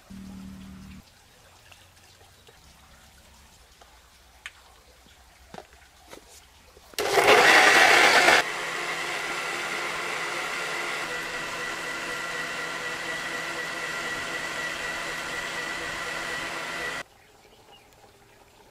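Electric mixer-grinder blending milk and chocolate into a milkshake. It starts loud about seven seconds in, settles after a second and a half into a steady whirring run with a constant whine, and cuts off suddenly near the end.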